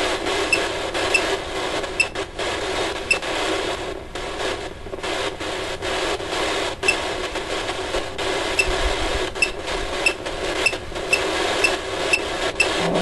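Ghost-hunting phone app playing radio-like static through the phone's speaker: a steady crackling hiss full of clicks, with short high beeps about twice a second over a faint low hum.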